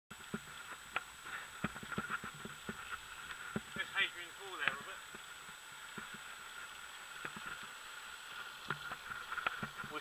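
A bicycle rolling along a rough tarmac lane, heard from a camera on the bike: irregular clicks and knocks of the bike and mount rattling over the road surface over a steady hiss, with a faint steady high whine. A brief voice is heard about four seconds in.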